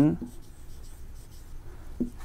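Marker pen writing a word on a board: a faint run of short, scratchy strokes.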